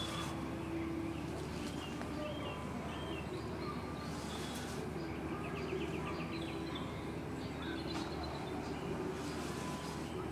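Birdsong: several birds chirping and singing, with a short rapid trill a few seconds in, over a steady low background hum.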